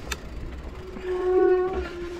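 Fat-tire mountain bike's disc brakes squealing: a steady, single-pitched squeal that comes in about a second in and swells, over a low rumble of wind and tyres on dirt. A sharp click sounds near the start.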